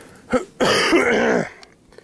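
A man coughing: a brief first hack, then one longer cough of nearly a second. He is sick and short of breath with asthma.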